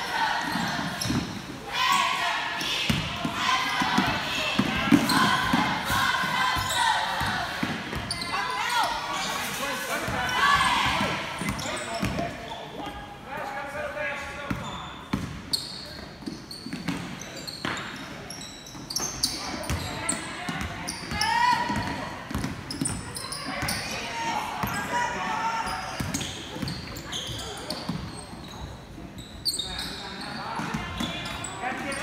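Basketball bouncing on a hardwood gym floor during play, with voices of players and spectators calling out, echoing in a large gym.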